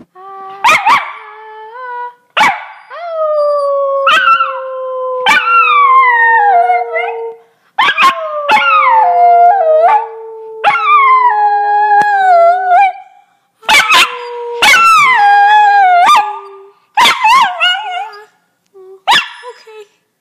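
An American Eskimo dog howling together with a woman who howls along, in about six loud phrases with short breaks between them. Two voices sound at once: a long held note that slowly sinks, and a higher howl that wavers and swoops up and down above it.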